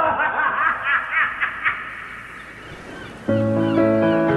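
Laughing that trails off over the first couple of seconds, then music with held notes starts suddenly a little over three seconds in.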